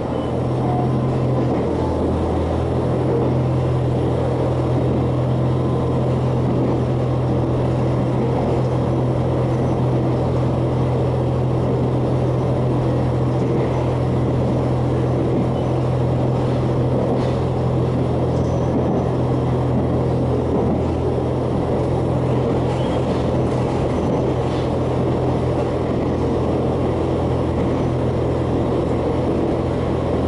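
Interior running sound of a JR Hokkaido H100 diesel-electric railcar, recorded above its powered bogie: a steady low drone from the diesel engine and drive under a rumble of wheels on rail. The low note shifts about two seconds in, then holds.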